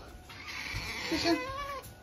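A pet otter calling in high-pitched squeaks, with one longer rising-and-falling call about a second and a half in.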